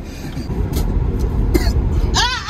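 Steady low rumble inside a car, with two short breathy throat sounds from a person, one near the middle and one later.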